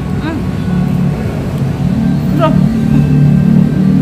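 A woman humming short "mm" sounds of enjoyment while tasting food: a brief rise-and-fall hum near the start and another falling one about halfway through. A steady low rumble runs underneath.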